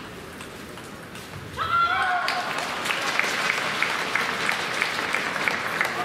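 Table tennis ball clicks during a rally, then about a second and a half in a player's short shout as the point is won, followed by arena crowd applause and cheering with a regular clapping beat of about three claps a second.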